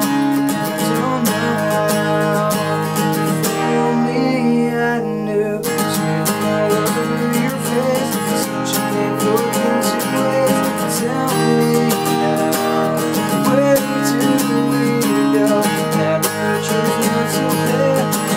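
Acoustic guitar strummed in a steady rhythm under a man's singing voice. About three and a half seconds in, the strumming pauses for about two seconds while a chord rings on, then resumes.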